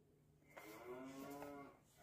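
A faint, drawn-out 'mmm'-like voice sound: one held tone lasting just over a second, starting about half a second in, its pitch rising slightly and then falling.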